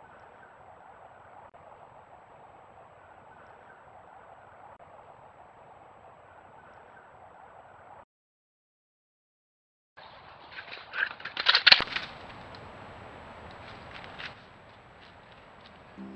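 Trail-camera sound: a steady faint hiss of woodland ambience, broken by a two-second dead gap at a clip change. It is followed by a short burst of loud rustling and crunching in dry leaves, the footsteps of a white-tailed deer close to the camera.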